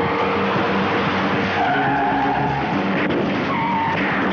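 Car tyres squealing in skids over a running car engine. The squeals come as wavering high tones, strongest just before two seconds in and again near the end.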